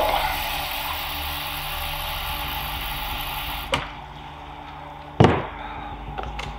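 Kitchen sink faucet running into a drinking glass, shut off with a click a little past halfway. About a second and a half later, a single thud as the glass is set down on the counter.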